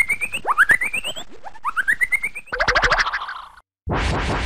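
Comic cartoon sound effect: a fast-rattling rising boing sweeps up in pitch three times, about a second apart, then breaks into a shorter, choppier burst. It cuts off to a brief silence just before a loud new sound starts at the very end.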